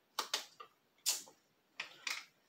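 Light handling noises from a slime-mix canister and its loose seal: five or six short crinkles and clicks.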